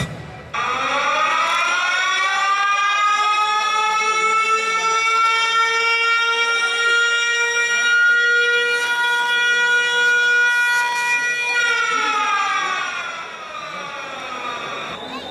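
Air-raid siren sound effect played over the stage speakers: its wail rises about half a second in, holds one steady pitch for around ten seconds, then falls away near the end.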